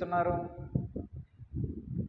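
A man's voice speaking into a microphone, the phrase ending within the first second, followed by a low, irregular murmur.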